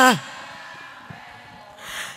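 The end of a speaker's drawn-out word, then a short pause with faint room noise, and an audible intake of breath near the end before speech resumes.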